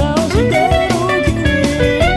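Electric guitar playing a lead melody with bends and slides over a rock backing of drums and bass.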